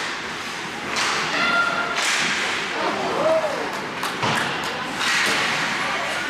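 Ice hockey play: sharp knocks and several thumps of sticks and puck on the ice and boards, mixed with short shouts from players and onlookers.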